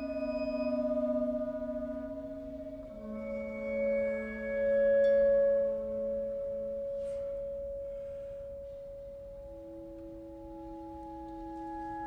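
Soft contemporary chamber music: flute, clarinet and vibraphone holding long, pure sustained notes that overlap, swell and fade. A new chord enters about three seconds in and swells to its loudest a couple of seconds later, and a fresh low note comes in near the end.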